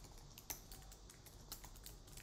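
Faint typing on a computer keyboard: a quick, uneven run of key clicks as a word is typed.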